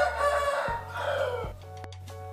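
A rooster crowing once in the background: one long call lasting about a second and a half, falling in pitch at its end.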